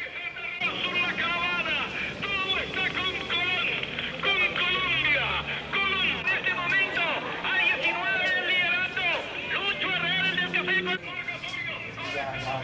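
Excited Spanish-language radio sports commentary on a cycling race, fast and high-pitched, sounding narrow like a radio speaker, with a crowd murmuring around it. A low steady hum joins in for a couple of seconds near the end.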